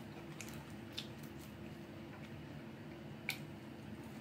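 Close-up chewing of food with wet mouth clicks and lip smacks: a handful of short clicks, the loudest about three seconds in.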